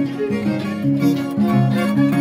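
Live Andean folk dance music played on a harp and a violin, with held bowed notes over plucked lower notes.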